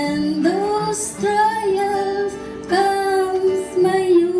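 A high female voice sings a slow gospel song, holding long notes over a soft instrumental accompaniment.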